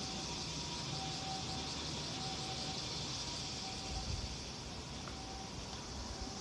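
Steady outdoor ambience: a high, even hiss of insects chirring in the surrounding trees over a low rumble of distant town traffic, with a faint tone that comes and goes.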